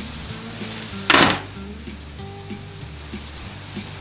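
Medium-fine salt shaken from a shaker bottle over raw beef ribs: one short, loud scattering burst about a second in. Background music with a steady bass line plays throughout.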